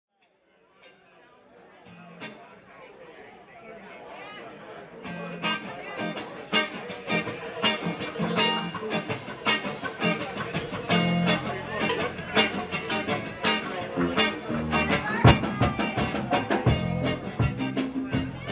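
Rock band playing live, with guitars and a drum kit, in an instrumental intro. The sound fades in from silence and builds, and the drums come in hard about five to six seconds in.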